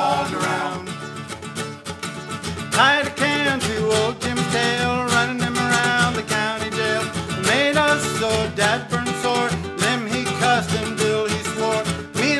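Nylon-string acoustic guitar strumming a country-folk tune, with men's wordless voices howling in long glides that rise and fall in pitch, several times.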